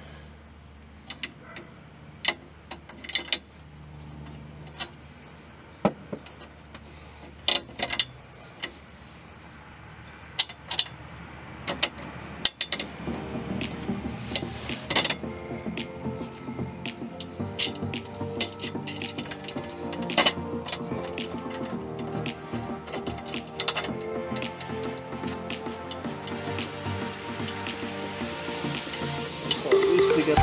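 Scattered sharp metal clicks and clanks of an exhaust Y-pipe, its bolts and gaskets being handled and fitted under a car. From about twelve seconds in, background music with a steady beat plays over the remaining clanks.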